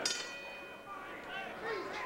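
Boxing ring bell struck once, ringing and fading over about a second: the bell that opens the round.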